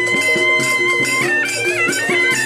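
Traditional Madurese saronen music: a shrill double-reed shawm holds a long note that drops and wavers in the second half. Under it run a repeating lower melody and steady drum and percussion strokes.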